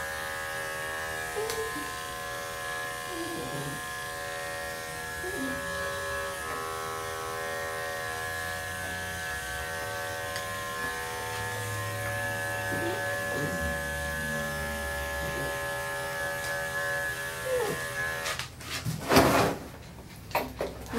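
Corded electric dog-grooming clippers with a #10 blade run steadily with an even motor hum while shaving a poodle's sanitary area. The clippers cut off about a second and a half before the end, followed by a brief loud burst of noise.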